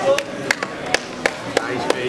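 Sharp hand claps, about three a second, over background voices.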